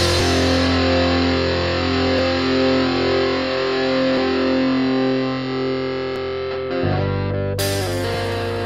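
Stoner/doom metal: a heavily distorted electric guitar chord is held and left ringing while the drums drop out. About seven seconds in the chord changes, and the drums come back in with a cymbal crash near the end.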